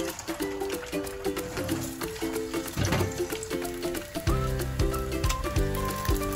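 Quirky, upbeat background music, a short plucked figure repeating, with a bass line coming in about four seconds in. Underneath, eggs frying in hot oil crackle faintly.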